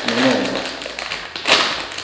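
Foil chip bag being handled, rustling and crackling, with one loud sharp crackle about one and a half seconds in.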